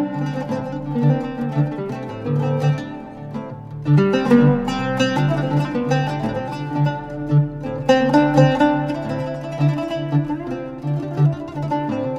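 Oud playing an instrumental melody in quick plucked notes over a repeating low figure, with a fresh phrase starting about every four seconds.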